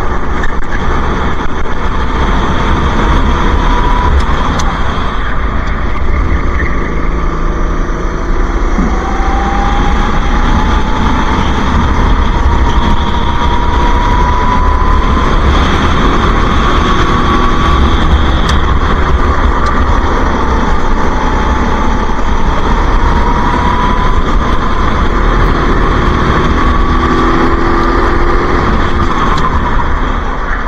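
Go-kart engine at racing speed, heard from onboard, its pitch climbing along the straights and dropping back for the corners, over a heavy low rumble.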